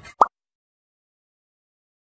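A single short cartoon 'plop' sound effect just after the start, then the sound track cuts to complete silence.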